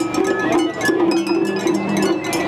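Matsuri-bayashi festival music played on a float: taiko drums and rapid, continuous metallic strikes like a small hand gong, with short held tones over them.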